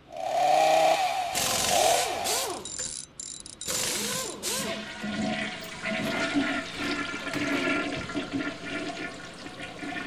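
Toilet flushing: a sudden loud rush of gurgling water, then a lower, steadier flow of water.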